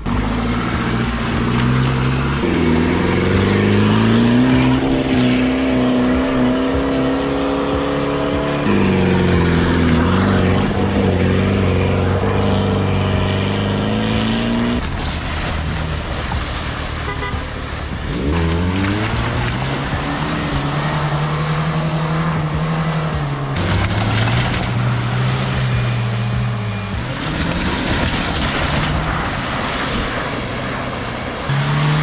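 Off-road 4x4 engines revving hard, pitch rising and falling again and again, as the vehicles drive through a shallow river, with water splashing.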